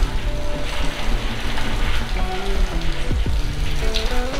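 Heavy storm rain pouring down steadily, with background music playing over it.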